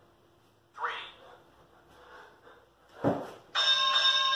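A man breathing hard during a bodyweight workout, with short sharp puffs. Near the end a loud steady tone of several held pitches starts and carries on.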